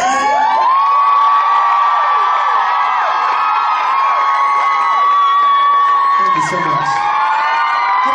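Concert audience cheering and screaming after a song ends, many high voices whooping and shrieking over one another in a steady, loud roar of applause.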